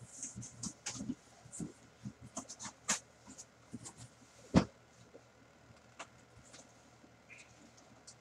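A cardboard helmet box being handled and opened by hand: scattered rustles, scrapes and light taps, with one sharp knock about halfway through.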